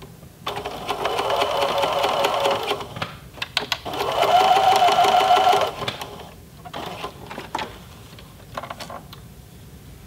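Domestic electric sewing machine running a straight stitch through heavy pant fabric, stitching in the ditch of a seam. It runs in two spells of about two seconds each with a short stop between, then gives a few short clicks and brief bursts near the end.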